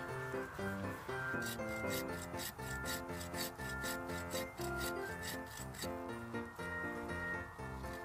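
A saw cutting through the trunk of a small Christmas tree, with quick, even strokes for a few seconds in the middle. Background music plays throughout.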